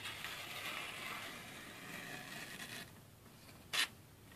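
The VG10 blade of a Boker Exskelibur folding knife slicing through a newspaper page: a faint, hardly audible papery hiss for nearly three seconds, then a brief sharp rustle of paper near the end. The quiet, clean slice is the sign of a freshly touched-up, very sharp edge.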